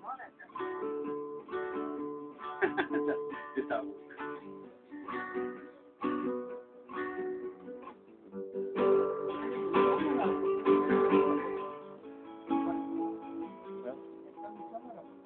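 Acoustic guitar played solo, with picked melody notes and strummed chords. The playing is fullest and loudest about nine to eleven seconds in.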